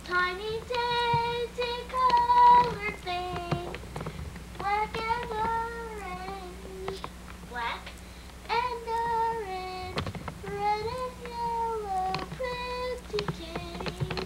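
A young girl singing in short phrases with long held notes, in three bursts with pauses between them.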